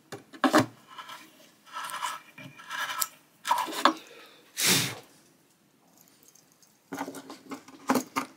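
Hand reamer scraping round the freshly drilled control holes in the wooden top of a 1950 Silvertone archtop guitar, a few short rasping strokes, followed by a louder brief rush of noise near the middle. Near the end, small metal clicks as control hardware is handled.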